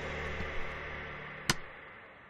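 A fading wash of noise with a faint steady tone under it, and one sharp click about one and a half seconds in.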